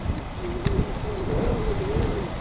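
A low, wavering cooing call of a dove, several linked notes held for over a second, over a steady low rumble.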